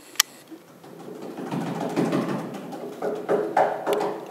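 Marimba played softly in its low register, a rolled sound swelling gradually, with a few separate struck notes near the end. A single sharp click comes at the very start.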